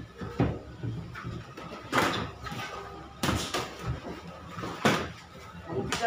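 Boxing sparring impacts: about five sharp smacks and thuds of padded gloves landing, mixed with feet hitting the ring canvas, the loudest about two seconds in and near the end.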